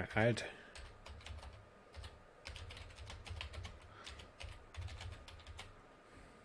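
Typing on a computer keyboard: a run of irregular key clicks lasting several seconds.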